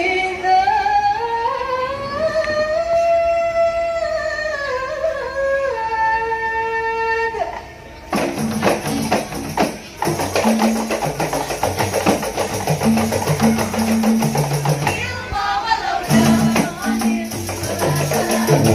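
Rebana frame-drum ensemble performance: a singer holds one long melodic phrase that rises and falls for about seven seconds, then the rebana drums come in with a fast beat of deep and sharp strokes.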